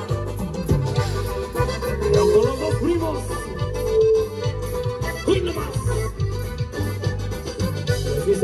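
Live norteño dance music: a button accordion plays the melody over guitar, electric bass and drums, with a steady dance rhythm.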